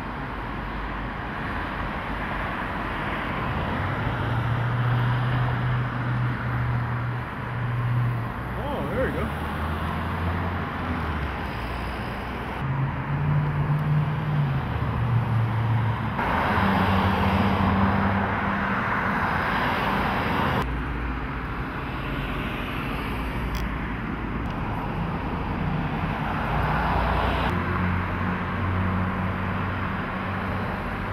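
Street traffic noise: a steady wash of passing vehicles with a low engine hum that shifts in pitch now and then.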